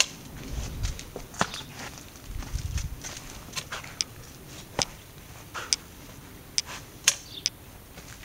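Garden rake working damp soil: irregular scrapes and sharp clicks as the tines drag through and knock into the mud, a few of them crisper and louder in the second half.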